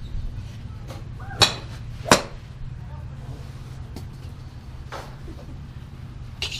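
Golf clubs striking balls off driving-range mats: two sharp cracks about two-thirds of a second apart, over a steady low rumble.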